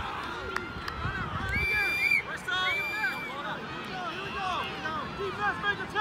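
A group of children's voices shouting and cheering over one another, many short overlapping yells.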